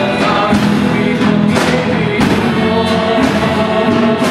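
Live ensemble music: bowed violins, flute and guitar with voices singing, over regular percussion hits.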